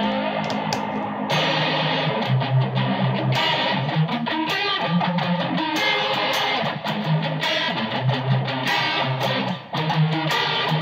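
Electric guitar played through a Zoom G2.1U multi-effects pedal. A held chord with a sweeping effect stops about a second in as a new preset takes over, and the rest is a distorted riff of picked low notes, played over and over.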